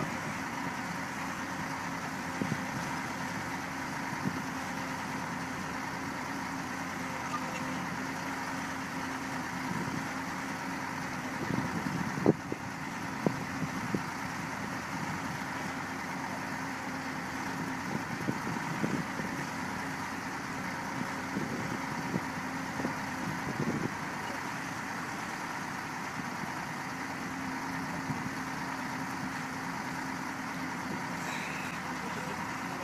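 Excavator diesel engine running steadily at a low idle-like hum, with a few sharp metallic knocks and clanks around the middle and scattered lighter ones after.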